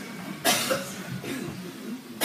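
A single cough about half a second in, sharp at the start and fading quickly, followed by faint low sound.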